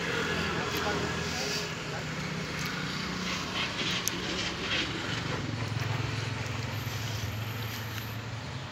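A steady low engine hum that shifts a little lower about halfway through, with indistinct voices and scattered small clicks behind it.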